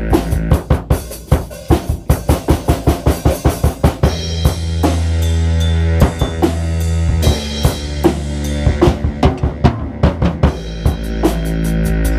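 Improvised jazz-style music: a drum kit playing quick strings of kick, snare and rim hits over held bass notes and chords. The strikes thin out in the middle of the passage while a low bass note swells.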